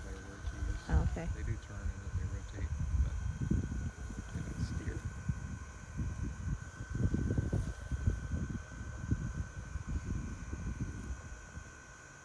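Steady high whine of a Mammotion Luba 2 robot lawn mower's electric motors as it drives across a steep lawn slope. Heavy gusty wind rumble on the microphone is the loudest sound.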